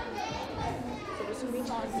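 Classroom chatter: many children's voices talking over one another in a low, mixed murmur.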